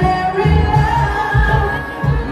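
A woman singing live into a microphone over loud music with a heavy bass beat that hits about twice a second, heard from the crowd.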